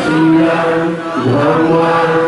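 Theravada Buddhist devotional chanting by a gathering of lay devotees, the voices held on long steady notes that step from pitch to pitch.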